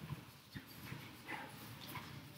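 A few faint, soft knocks, irregularly spaced, over a quiet background.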